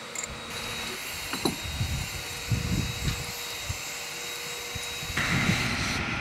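Boatyard travel hoist's engine running steadily with a faint whine, grows louder about five seconds in, with low rumbles of wind on the microphone in between.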